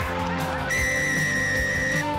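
Over background music, a referee's whistle sounds about two-thirds of a second in as one long, steady blast, signalling the try just scored.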